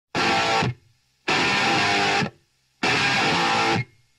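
Electric guitar playing three chords, each held for about half a second to a second and cut off sharply into silence. This is the stop-start opening of a rock song.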